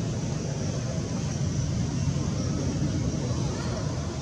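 Steady outdoor background noise: a low, even rumble with a faint high hiss above it.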